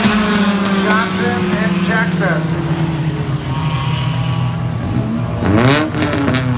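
Stock-bodied short-track race car engines running close by the catch fence, the main engine note falling steadily in pitch as the car goes past and eases off. Near the end a second engine sweeps up and back down in pitch as another car passes.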